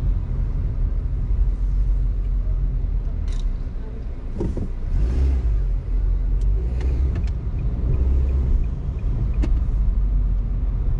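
Car driving through city streets: a steady low road rumble, with a few brief sharp clicks scattered through it.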